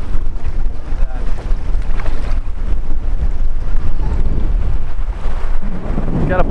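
Strong wind buffeting the camera's microphone, a loud uneven low rumble, over the wash of sea water and small surf around the person filming.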